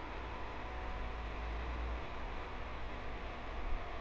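Steady faint hiss with a low hum underneath, unchanging and without distinct events: the background noise bed of the recording.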